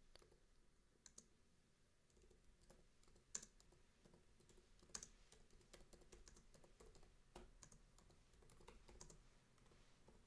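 Faint typing on a computer keyboard: irregular key clicks, a few louder than the rest.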